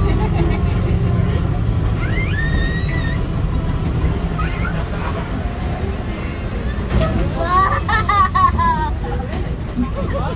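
Steady low engine rumble of a farm trailer ride on the move. A child's high voice glides up about two seconds in, and children's voices call out again near eight seconds.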